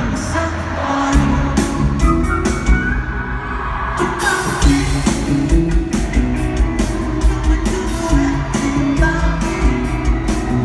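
Live pop-rock band over an arena PA: lead vocal over drums, bass and electric guitar. About three seconds in the drums drop back, and the full beat returns a second later.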